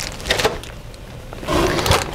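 Clear plastic parts bags crinkling and rustling as bagged plastic parts trees are picked up and put down, with small clicks and knocks of handling and the densest crinkle about one and a half seconds in.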